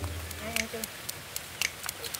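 A person chewing charcoal-grilled mudskipper, with small, sharp mouth clicks every fraction of a second.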